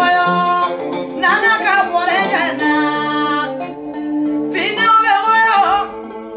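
A woman singing with instrumental backing, long held notes and wavering, ornamented phrases.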